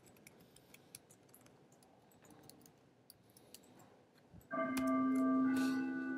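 Faint, scattered computer keyboard clicks as code is edited. About four and a half seconds in, a loud bell-like chiming melody of several sustained tones starts abruptly and carries on.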